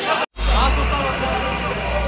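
Onlookers' voices, broken by a sudden cut about a third of a second in, after which a fire engine's motor runs low and steady under the crowd's chatter.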